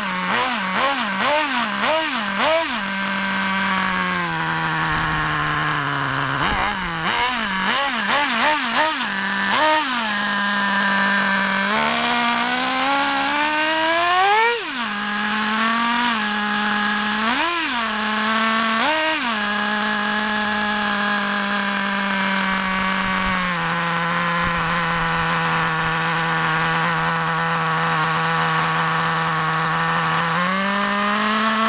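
Traxxas TRX 2.5R nitro two-stroke engine in a Revo RC truck running, blipped with the throttle over and over: rapid short revs in the first few seconds and again around eight seconds in, one longer climbing rev about halfway, and a couple more blips before it settles to a steady idle for the last ten seconds.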